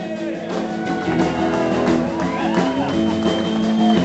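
Live blues-rock band playing rock and roll, loud and continuous: electric guitar holding long, bent notes over bass and drums.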